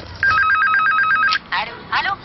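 An electronic telephone ringer: one ring of a rapid two-tone trill lasting about a second, followed by voices near the end.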